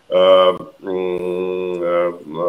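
A man's voice: a short syllable, then a long hesitation sound held at one steady pitch for about a second, a drawn-out "eee" filler between phrases.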